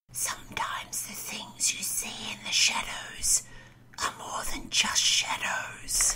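A voice whispering in short breathy phrases, with a brief pause a little past halfway.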